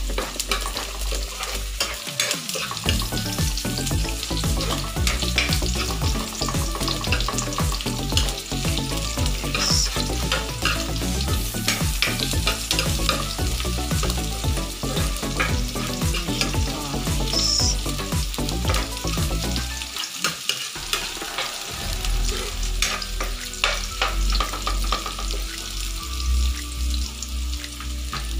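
Minced garlic and sliced red onion sizzling in hot oil in a nonstick wok, with a spatula scraping and tapping against the pan as it stirs, giving many short clicks over the steady sizzle.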